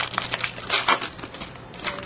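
Foil trading card pack wrapper being torn open and crinkled by hand: a run of sharp crackles, loudest a little before the middle and again near the end.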